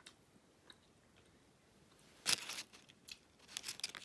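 Chewing a peanut butter cup: near quiet for about two seconds, then a short louder burst followed by a run of small mouth clicks toward the end.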